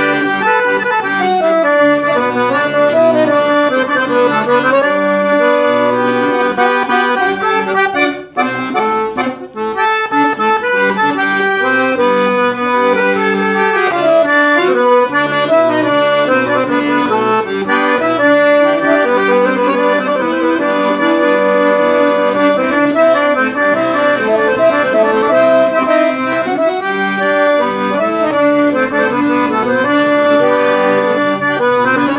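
Scandalli piano accordion played solo: a melody on the keys over repeating low accompaniment notes, with two brief dips in loudness about eight and nine and a half seconds in.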